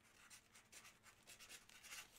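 Near silence, with faint, irregular scratching and rustling.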